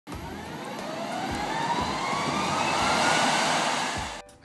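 Jet engine spooling up: a rising whine over a roar that grows steadily louder.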